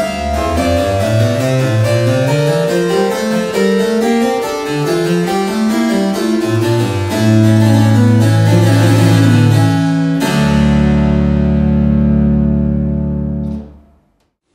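Claviorganum played: a short keyboard passage with a rising bass line, plucked harpsichord attacks over steady organ-pipe tones. It ends on a long held chord of about three seconds that stops abruptly just before the end.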